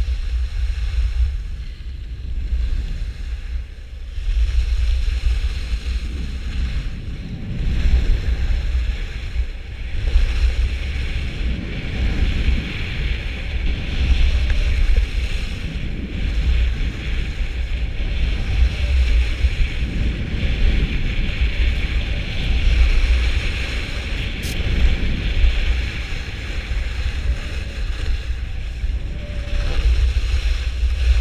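Wind rushing over the microphone of a skier's camera in continuous gusts while skiing down a groomed run, with the hiss and scrape of skis on packed snow, strongest in the middle stretch.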